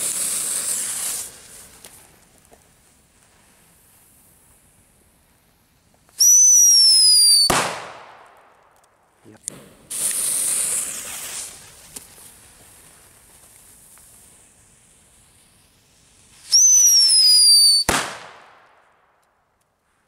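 Two Black Scorpion Super Whistling firecrackers, each lit in turn: the fuse catches with a hiss, and some six seconds later the firecracker gives a loud whistle that falls in pitch for over a second and ends in a sharp bang. The first bang comes about seven and a half seconds in, the second near the end.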